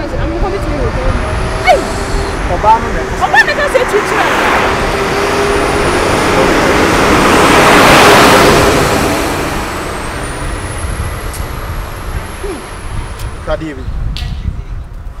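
A motor vehicle passing by: its road noise swells over a few seconds, peaks about eight seconds in, and fades away about two seconds later.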